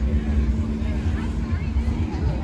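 A steady motor hum with a low, uneven rumble underneath, and faint voices of people talking in the background.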